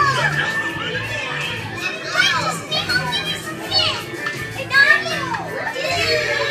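High-pitched children's voices calling and squealing excitedly, with no clear words, over music.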